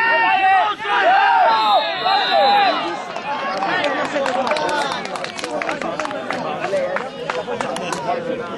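Several men shouting at once, loudest in the first three seconds, then overlapping voices calling out, with scattered sharp knocks.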